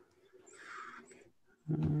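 A faint breathy vocal sound from a person at a headset microphone, a sigh of about a second, followed by a man starting to speak near the end.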